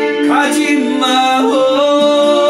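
A man singing a trot (ppongjjak) melody in long held notes that slide from pitch to pitch, over his own steel-string acoustic guitar strumming.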